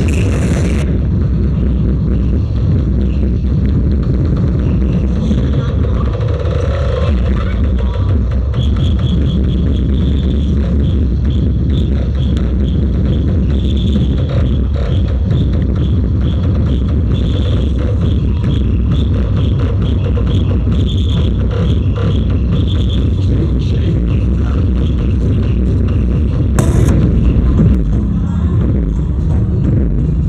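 Loud electronic dance music with heavy, steady bass, played through a large outdoor PA sound system driven by racks of power amplifiers.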